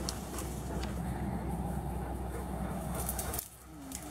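Wind rumbling on a handheld camera's microphone, with rustling and handling noise as the camera moves through grass and brush. The rumble drops away suddenly about three and a half seconds in.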